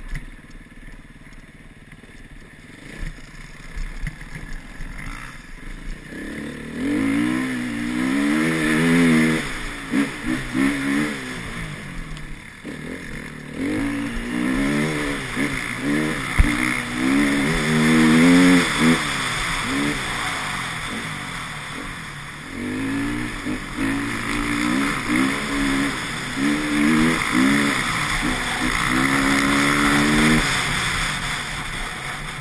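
Enduro dirt bike engine heard from the rider's helmet, running lower for the first few seconds, then revving up and down again and again as the bike accelerates and shifts along the trail.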